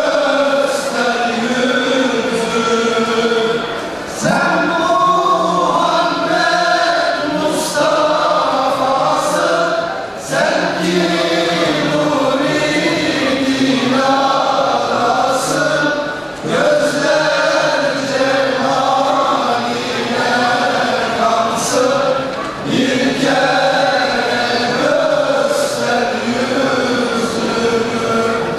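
Men's choir singing a Turkish ilahi (Islamic hymn), led by a singer on a microphone. The singing goes in phrases of about six seconds, with a brief break between phrases.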